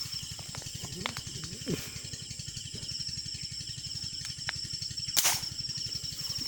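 A single air rifle shot, one sharp crack about five seconds in, over steady insect chirping.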